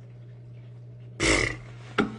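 A man's short, breathy vocal noise into the microphone, like a grunt or sigh, about a second in, over a faint steady electrical hum.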